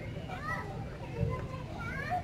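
Faint background voices with short, high rising calls about half a second in and again near the end, over a steady low outdoor rumble.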